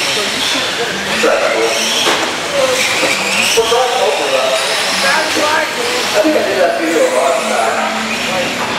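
Radio-controlled cars running on a dirt track, their motors whining and rising in pitch as they accelerate, with people talking.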